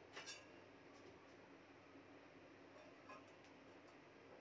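Near silence: faint room tone, with a small click just after the start and a fainter one about three seconds in.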